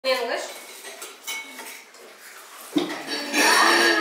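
Spoons, bowls and glasses clinking at a table during a meal, with one sharper clink just under three seconds in. Children's voices talk over it, louder near the end.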